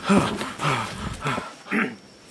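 Several short wordless vocal sounds from a man, grunts and gasps mostly falling in pitch, with a breathier one near the end.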